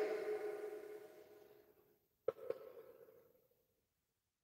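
The fading tail of a man's loud, drawn-out voice, dying away about a second in. A little past the middle come two short clicks with a brief ringing tail.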